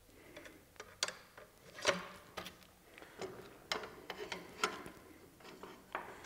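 Light, irregular clicks and taps of the frame rods of a collapsible LED panel frame being slotted into the frame's end and center pieces.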